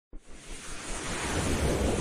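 Whoosh sound effect of an animated logo intro: a rushing noise with a deep rumble under it that starts suddenly and swells steadily louder.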